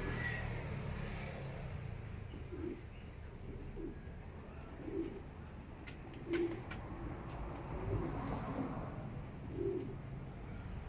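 A dove cooing, a series of short low-pitched coos every second or so, over a steady low background rumble. A few sharp clicks come about six seconds in.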